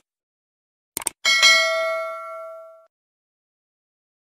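A quick double mouse-click, then a bright bell chime that rings out and fades over about a second and a half: the click-and-bell sound effect of a subscribe-button animation.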